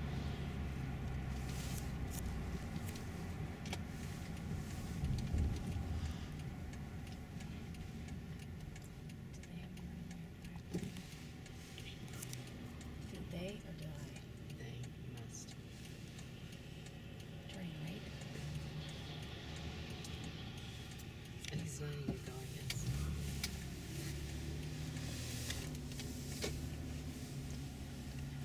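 Car cabin noise while driving: a steady low engine and road rumble, with a few light clicks and rattles inside the car.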